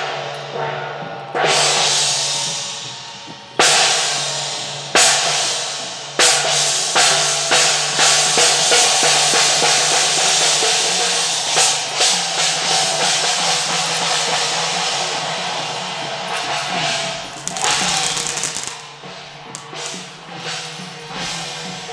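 Temple-procession gong-and-drum percussion playing: loud strikes a second or two apart at first, each ringing away, then quickening into rapid strikes about six seconds in and a dense ringing wash that eases near the end.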